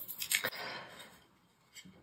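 A few faint, short rustling sounds in the first second, then near silence.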